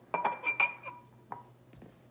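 Chef's knife blade knocking against a ceramic mixing bowl to shed chopped garlic and shallot: a quick run of clinks in the first half-second with a short ringing tone, then one more clink a little after a second in.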